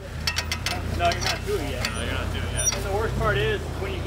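An off-road vehicle's engine running at low speed, with a few sharp clicks and knocks in the first second and indistinct voices over it.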